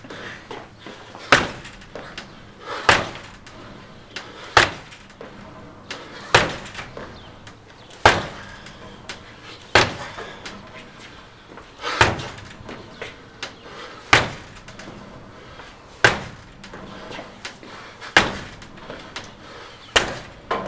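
A front door being kicked hard and slamming against its strike plate lock chain, which holds: about ten heavy impacts, one every two seconds or so.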